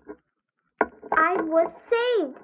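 A child's voice, broken by about half a second of dead silence, then speaking again from just under a second in.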